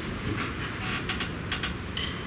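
Steady hiss of room noise in a concert hall, with about five short, sharp clicks, two of them in quick pairs, from no clear source.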